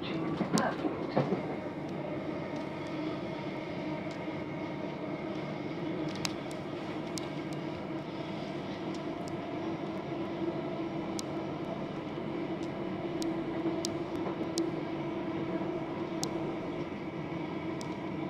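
Interior of a c2c Class 357 Electrostar electric multiple unit on the move: a steady whine from the traction motors over the rumble of the wheels on the rails, with a few sharp clicks scattered through it.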